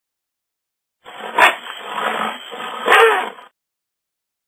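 An animal call, rough and loud, lasting about two and a half seconds with two loud peaks about a second and a half apart.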